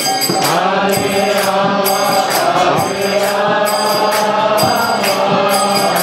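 Kirtan: a group chanting a mantra in call-and-response style to a harmonium, with a mridanga drum and a steady high beat about twice a second.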